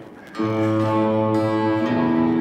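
Journey OE990 folding travel electric guitar played through an amp: a chord is strummed about half a second in and left ringing, then changes to another chord near the end.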